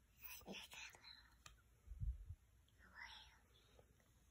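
Faint whispering in short breathy stretches, with a soft low thump about two seconds in.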